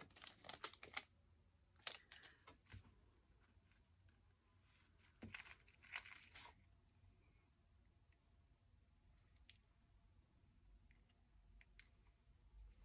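Faint rustling and crackling of thin paper and card pieces being handled, in a few short clusters.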